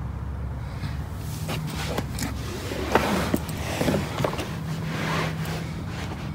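Rustling and a few light knocks from a hand-held phone being moved close to a car's cloth seat and seatback, over a steady low hum. The sharpest knocks come about three and four seconds in.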